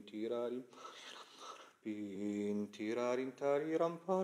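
A man singing a melodic phrase on wordless syllables, in held and gently wavering notes, broken by a short breathy gap about a second in before the singing resumes.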